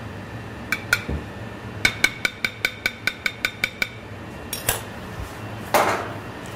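A metal kitchen utensil clinking against a metal pan: two ringing clinks, then a quick even run of about ten clinks, some five a second, lasting two seconds. Two short rustling or scraping noises follow near the end.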